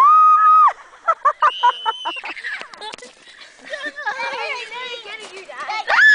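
Children screaming and squealing during a snowball fight. A loud, high scream is held for under a second at the start, followed by high squeals and shouting, and another scream breaks out at the end.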